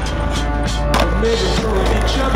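Skateboard wheels and trucks grinding along a metal handrail, then a single sharp clack of the board landing about a second in, heard over a loud song.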